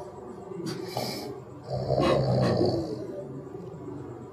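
A sleeping person snoring, with one long, loud snore about two seconds in.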